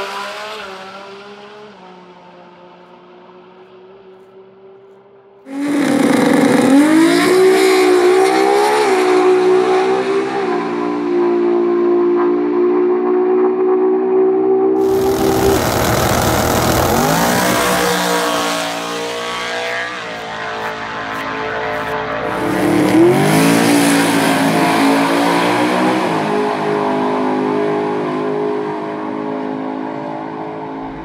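Drag race cars at full throttle in a series of passes. An engine note fades away over the first few seconds. A sudden loud launch comes about five and a half seconds in, its pitch climbing and then holding high, followed by a long stretch of loud rushing noise and another launch with rising pitch about twenty-three seconds in.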